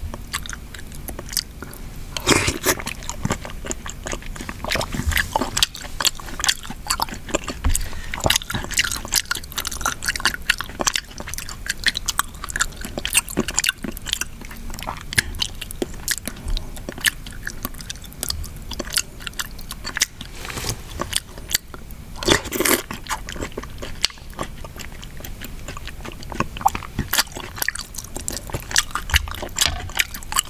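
Close-miked eating of mung bean porridge: continuous wet chewing and mouth sounds, with clicks of a ceramic spoon in the bowl. The loudest bursts come about two seconds in and again some twenty seconds later.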